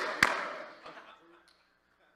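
A single sharp hand clap a moment in, ringing out in a large hall and fading away over about a second and a half to near silence.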